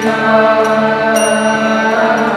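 Kirtan: voices chanting a mantra together over a sustained harmonium drone, with a small hand cymbal struck and ringing about a second in.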